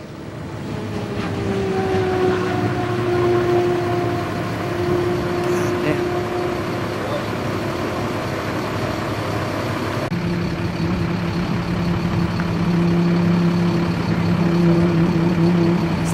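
Car engines running steadily, with a constant background of wind and crowd noise. A cut about ten seconds in brings in a deeper, louder steady engine note as a car rolls up close.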